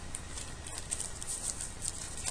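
Light, irregular clicks and rustling from handling a plastic compact case and pressing oil-blotting paper onto the face, over a low steady hum.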